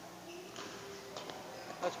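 A few light, quick footsteps and shoe taps on a synthetic badminton court mat as a player lunges and steps during a footwork drill.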